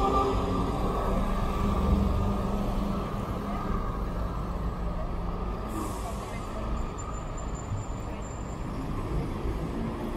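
Diesel city bus engine running as the bus pulls away and drives off, with a short hiss of air brakes about six seconds in.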